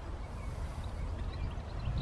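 Outdoor ambience: a low wind rumble on the microphone, with a few faint, scattered bird chirps.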